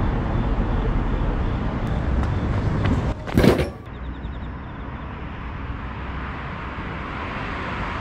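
Steady city traffic noise from passing cars on a nearby road. About three and a half seconds in there is one short, loud noise, after which the background is quieter.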